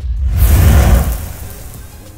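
Intro sound effect: a whoosh with a deep rumbling low end that swells about half a second in and then fades away.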